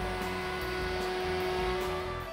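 HSD ES929A 9 kW air-cooled electrospindle of a CNC router running at constant speed while routing a wooden guitar-body blank, a steady whine over cutting noise.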